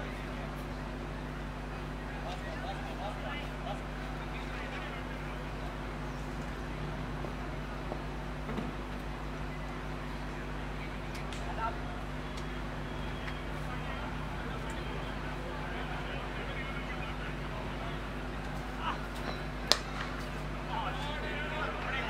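A steady low hum with faint distant voices. Near the end, a single sharp crack of a cricket bat striking the ball, the shot that is then confirmed as a six, followed by voices.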